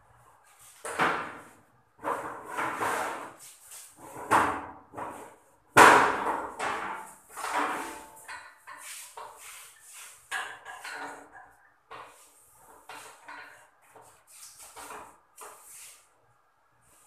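Irregular knocks, clatters and rustling from hands working wires in a metal electrical breaker panel, the loudest bang about six seconds in.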